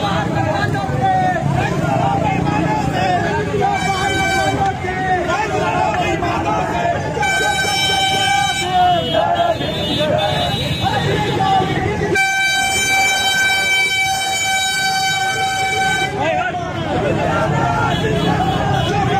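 Vehicle horn honking amid street crowd noise: a few shorter honks in the first half, then a long steady blast of about four seconds in the second half.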